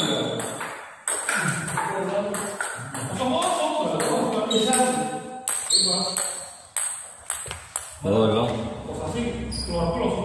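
Sharp clicks of a table tennis ball struck by bats and bouncing on the table, at an uneven pace. People's voices talking in the hall are as loud as the clicks, or louder.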